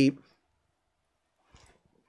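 The end of a spoken word, then near silence, with a few faint clicks near the end as a glass perfume bottle is picked up and handled.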